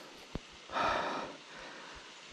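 A man's heavy breath out, one breathy puff of about half a second, coming about a second in after a small click: the breathing of a hiker winded from a very steep climb.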